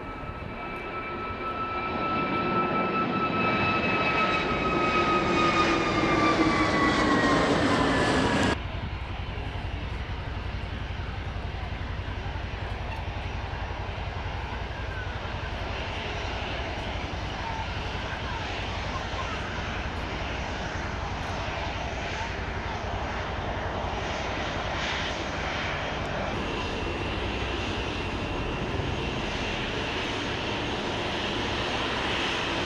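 Airliner engines growing louder as a plane closes in, their whine bending down in pitch as it passes. About eight and a half seconds in this cuts off suddenly to a steadier, quieter low rumble of aircraft engines.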